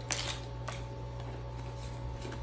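A couple of light clicks from a plastic spice shaker jar being handled, one just after the start and one about two-thirds of a second in, over a steady low hum.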